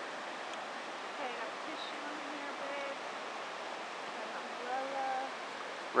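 Steady rushing of whitewater rapids on the McKenzie River.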